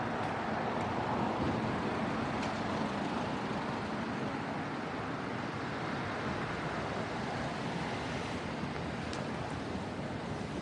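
Street traffic ambience: a steady wash of engine and tyre noise from cars passing on a city road, swelling slightly about a second in.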